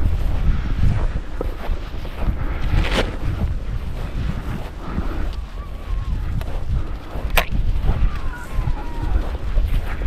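Wind buffeting the microphone over the swish of someone walking through tall dry grass, with a sharp click about seven seconds in.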